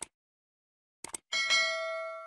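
A bell-chime 'ding' sound effect: after a brief silence, two faint clicks about a second in, then a bright ringing chime that slowly fades, as for a YouTube notification bell.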